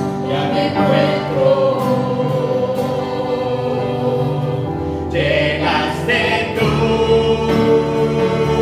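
Mixed group of men's and women's voices singing a worship song together into microphones, with acoustic guitar accompaniment; the voices hold long notes, with a held note near the end.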